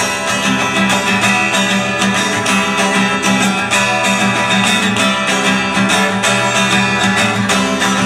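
Acoustic guitar strummed in a steady rhythm, an instrumental break between sung verses of a bard song.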